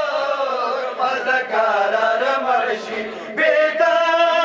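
A crowd of men chanting a mourning lament (nauha) together, with long held notes that bend in pitch. It dips slightly about three seconds in, then a strong held note begins near the end.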